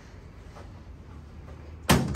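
A chiropractic adjustment thrust on a patient lying face down on the adjusting table: one sharp, loud thud a little before the end.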